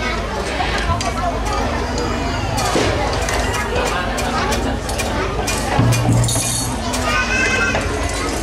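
Many children's voices chattering, with scattered light clicks and clinks from handled instruments and a brief louder tone about six seconds in; no drumming yet.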